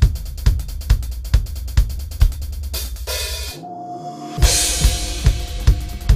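ATV aDrums electronic drum kit played over an electronic dance backing track, with a steady kick drum about two beats a second and hi-hat and cymbals. About three seconds in a rising noise sweep leads into a brief break. The beat then returns with a bright cymbal wash.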